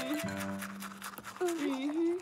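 Toothbrush scrubbing in quick repeated strokes over light background music; a voice begins near the end.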